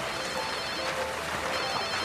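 Mobile phone ringing: a high warbling ringtone sounds twice, over soft background music.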